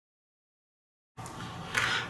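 Dead digital silence for about a second, then room tone cuts in suddenly, followed by a brief noise just before a man starts talking.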